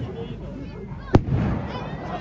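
A single firework burst bangs sharply about a second in, over the chatter of crowd voices.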